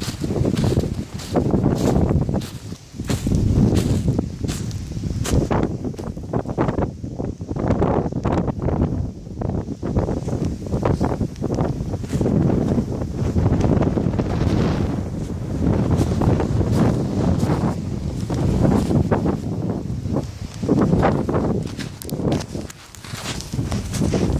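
Storm wind buffeting a phone microphone in gusts, a low rush that swells and dips every couple of seconds. Brushing and small knocks of handling, with the fur hood rubbing close to the phone, run through it.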